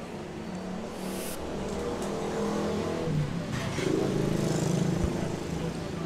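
A motor vehicle's engine going past, its hum growing louder to a peak about four to five seconds in and easing off near the end, with two brief rasping noises, about one second in and again near four seconds.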